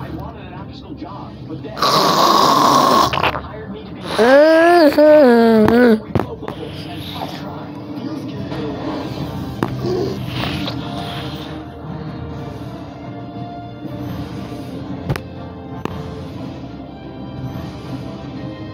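Cartoon soundtrack playing from a television: a loud, harsh vocal sound effect, then a loud wavering vocal sound a second later, followed by quieter background music.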